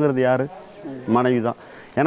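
Crickets chirping in a steady, faint, high-pitched drone behind a man speaking in two short phrases, with brief pauses between them.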